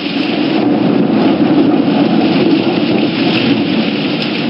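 Heavy rain with a low rumble of thunder, a loud steady wash of noise.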